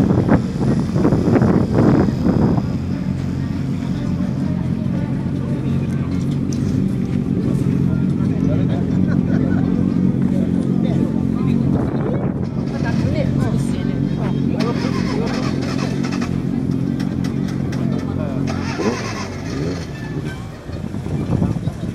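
An engine idling steadily close by, with people talking around it.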